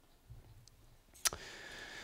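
A single sharp click about a second into a pause, followed by a faint steady hum.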